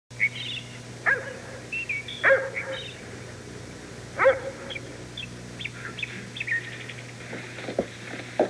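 Birds chirping in short high calls, with a dog barking three times about a second, two seconds and four seconds in; a steady low hum runs under it.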